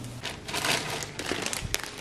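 Plastic bag of store-bought naan crinkling and rustling as it is handled, with a few sharp crackles near the end.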